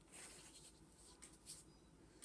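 Faint scratching of a watercolor paintbrush stroking across paper: one longer stroke near the start and a couple of short strokes later.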